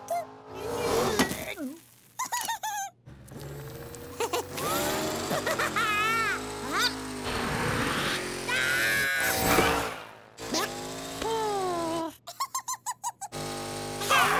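Cartoon soundtrack: background music with high-pitched, gliding vocal squeaks from the cartoon characters and comic sound effects. Near the end comes a rapid stutter of about nine short pulses a second.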